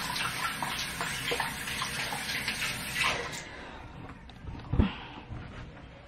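Water running from a bathroom tap as lotion is rinsed off a hand, shut off about three seconds in; a soft knock follows.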